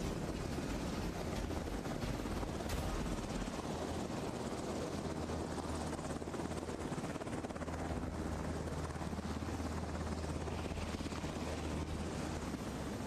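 VH-92A presidential helicopters running on the ground: a steady rotor and turbine noise, with a low hum that grows stronger in the second half.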